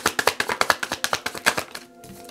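A tarot deck being shuffled by hand: a rapid patter of card edges slapping together, about ten clicks a second, that stops shortly before the end.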